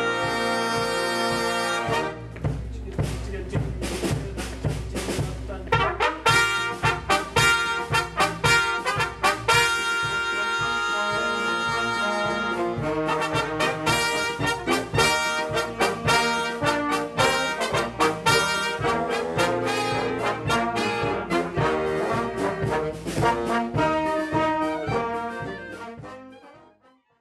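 A swing big band's brass section, with trumpets and trombone, playing a swing chart in rehearsal. There is a lighter passage a couple of seconds in before the full brass comes back, and it fades out at the end.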